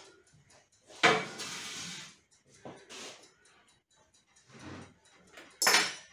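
Kitchenware being handled on a worktop: a sharp clatter about a second in followed by about a second of rustling, a few faint knocks, then a brief scrape near the end as a metal wire cooling rack is lifted from a wooden chopping board.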